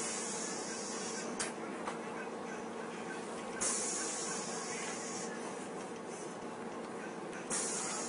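City bus interior: a steady low hum, broken by short bursts of high hiss about every four seconds, with a faint click a little over a second in.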